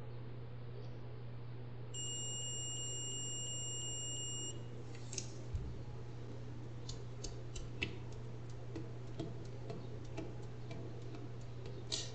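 Digital multimeter's continuity buzzer giving one steady high beep of about two and a half seconds, starting about two seconds in, as the test probes touch a motherboard coil that reads 0 ohms to ground. After it come light scattered clicks and taps as the probes are lifted and moved.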